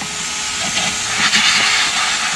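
Vacuum cleaner running in blow mode, air hissing out of its hose nozzle into the back of a guitar combo amplifier to blast out dust. The hiss swells about a second in, over a faint steady motor hum.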